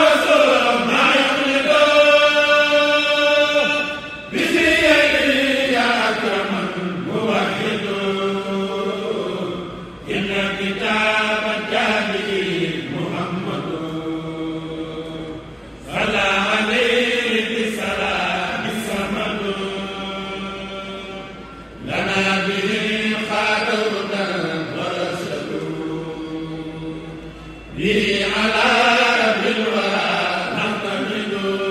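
Men's voices chanting a Mouride khassida, a Sufi devotional poem in Arabic, with no instruments. The chant runs in long, drawn-out melodic phrases, each fading and then starting anew about every six seconds.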